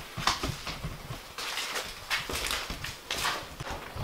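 Footsteps of a person walking at an uneven pace, with scuffs.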